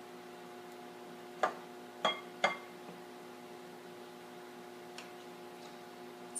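A metal spoon clinking against a tall glass mug while thick batter is scooped into it: three short, sharp taps in quick succession, with a faint fourth later. A faint steady hum lies underneath.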